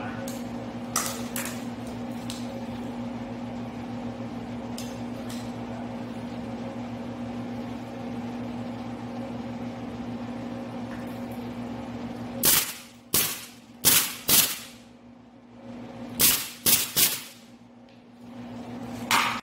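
A steady hum with a few faint clicks, then, about two-thirds of the way in, about seven sharp shots in quick groups from a Harbor Freight combination pneumatic brad nailer/stapler driving half-inch staples into the wooden frame.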